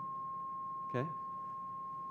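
A steady pure tone, the second of two tones of nearly the same pitch that are played one after the other before being mixed to make beats.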